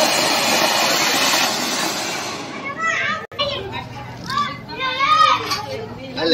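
A ground fountain firework (anar) spraying sparks with a steady hiss that fades out about two and a half seconds in. Children's voices follow in the second half.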